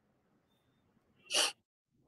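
A single sudden burst of noise lasting about a third of a second, about a second and a half in, over a faint line hiss; the line drops to dead silence right after it.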